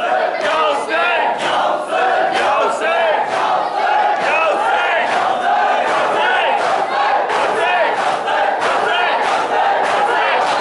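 Dense crowd of men shouting and chanting together, many voices overlapping, with frequent sharp smacks among them.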